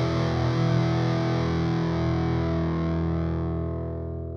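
Closing music ending on a held, distorted electric guitar chord that rings on and slowly fades, the treble dying away first.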